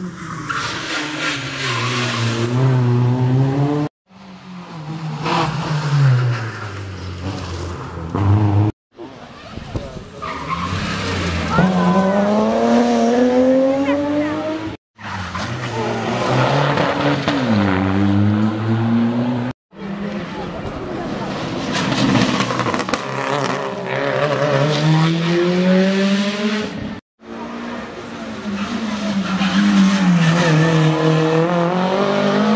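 A string of short clips of rally cars driving hard through a tight junction: each engine revs high, drops with gear changes and climbs again, with tyre squeal as the cars slide on the tarmac. The clips cut off suddenly about every four to seven seconds.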